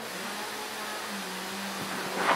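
Room tone: an even hiss with a steady low hum underneath.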